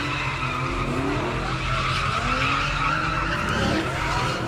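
Car tyres squealing without a break as cars spin donuts at a street sideshow, with engines running underneath.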